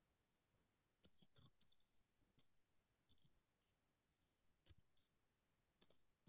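Faint computer keyboard typing: irregular key clicks, several a second, starting about a second in as a word is typed.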